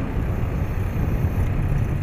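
Caterpillar backhoe loader's diesel engine running as the machine drives, a steady low rumble.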